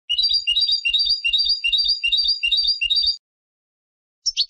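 Turkish goldfinch (European goldfinch) singing a short twittering phrase, repeated rapidly about three times a second, then breaking off about three seconds in.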